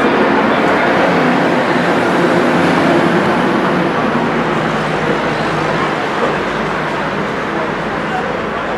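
Stadium crowd noise: a steady din of many voices from the rugby supporters in the stand, easing slightly toward the end.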